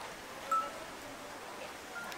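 A single short, high beep about half a second in, over a faint steady background.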